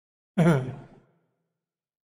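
A man's short sighing exhale, voiced and about half a second long, near the start; the rest is silent.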